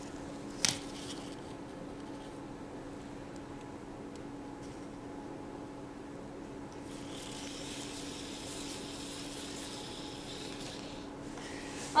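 Faint whir of a Sphero Mini robot ball's motors as it rolls across a paper map, from about seven seconds in to about eleven seconds, after a single sharp click just under a second in.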